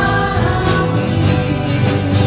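A live worship band playing: a woman singing held notes over acoustic and electric guitars, bass and a drum kit with cymbals.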